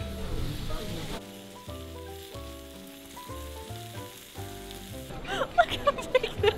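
Sausages and skewered meat sizzling on a hot flat-top griddle. From about a second in, soft background music with slowly changing notes plays over the sizzle, and voices come in near the end.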